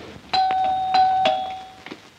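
Doorbell chiming ding-dong twice in quick succession, a higher tone followed by a lower one each time, the chimes ringing out before fading: someone is at the door.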